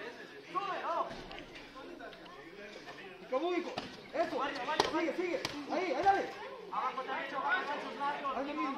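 Voices and chatter of spectators around a boxing ring, with four sharp smacks in the middle of the stretch: boxing-glove punches landing during an exchange.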